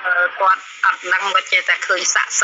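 Speech only: a person talking without pause, in Khmer.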